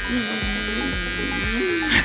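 Cordless electric beard trimmer buzzing steadily as it is run over a man's beard and moustache, with background music and singing mixed in.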